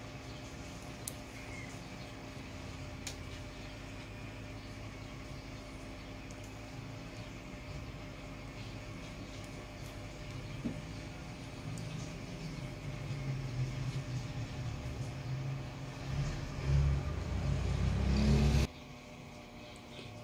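Low background rumble with a steady hum and no speech. The rumble grows louder over the last several seconds, then cuts off abruptly shortly before the end.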